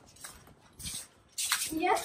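A quiet stretch with a few faint, brief hissing noises, then a person's voice starting near the end.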